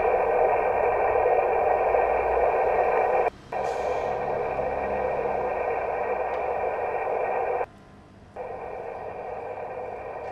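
Water leak noise as picked up by an electroacoustic valve microphone on the pipe network and heard through the leak detector: a steady, narrow-band hiss. It comes in three stretches, each quieter than the last, cut by brief breaks about three and a half and eight seconds in as the listening point moves from one valve to the next.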